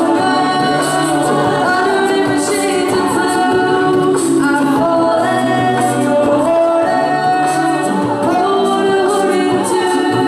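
All-female a cappella group singing in harmony through handheld microphones, with held chords over a low sustained bass part and no instruments.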